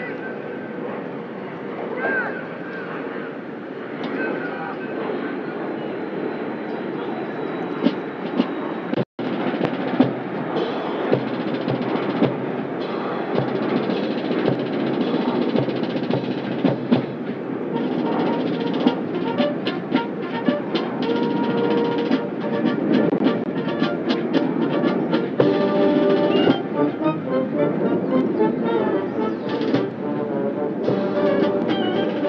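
Marine Corps marching band playing military marching music, brass with drums, as it marches forward on parade. The brass chords and drum beats stand out more clearly in the second half, and the sound cuts out for an instant about a third of the way in.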